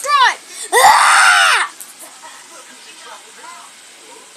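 A girl's high-pitched scream, held for about a second and coming just after a short cry, then quiet with faint murmurs.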